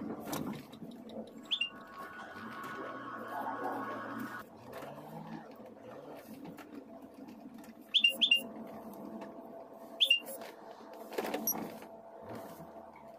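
Car tyres squeaking on the smooth, painted floor of an underground car park while driving slowly: one short squeak near the start, a quick pair later, then one more, over the low hum inside the car.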